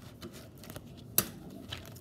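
Paper pages of a spiral-bound notebook rustling faintly as they are handled, with one sharp click a little over a second in.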